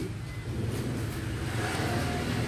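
Steady low rumble of motor vehicle noise, with a faint brief tone near the end.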